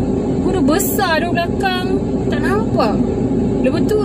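A woman talking inside a car cabin, over the car's steady low engine and road rumble.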